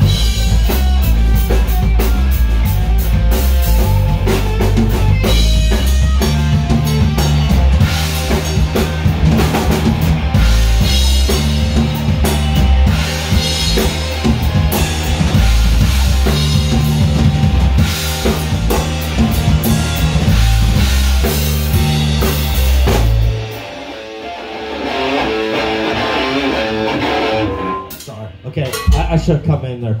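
Rock band rehearsing live in a room: drum kit, electric bass and a hollow-body electric guitar playing loudly together. About 23 seconds in the drums and bass stop abruptly and the guitar carries on alone, more quietly, for a few seconds before it too stops.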